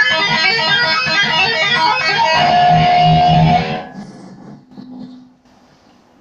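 Electric guitar playing a fast riff of quick picked notes, ending on a held note that cuts off just under four seconds in, followed by a few faint knocks.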